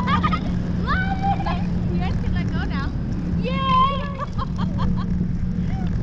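Boat engine running steadily with a low hum, under people's voices talking and calling, loudest a little past halfway.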